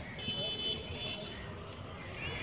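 Outdoor urban ambience: a steady hum of distant traffic and faint voices, with a steady high-pitched tone heard for about a second near the start.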